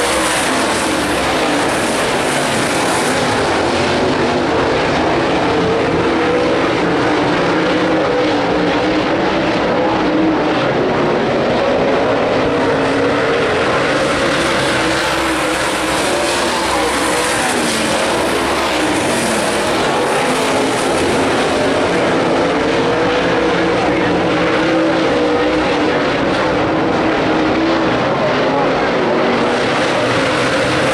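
Dirt late model race cars' V8 engines running hard around a dirt oval, several at once in a continuous din whose pitch wavers up and down as the cars go through the turns and down the straights.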